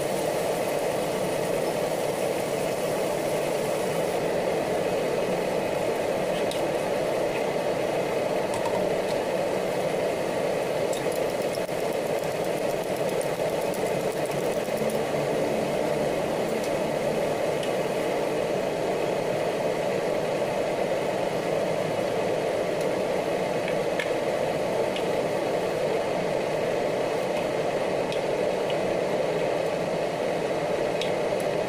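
Steady whirring drone with faint clicks and sizzles from a wok of tomato sauce and egg cooking over a gas burner.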